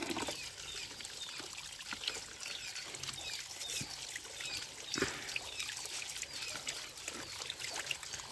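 A thin stream of water pouring from a pipe and splashing over a plastic toy held under it, then into a plastic basket, with one sharp knock about five seconds in.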